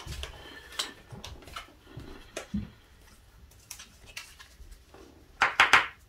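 Light crinkling and small taps as a foil trading-card booster pack wrapper and the cards inside are handled. A brief vocal sound comes shortly before the end.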